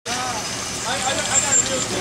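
People talking and laughing over a steady low background rumble.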